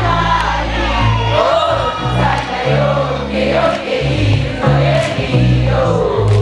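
Live vocal music: several voices singing together over held bass notes that change every second or so.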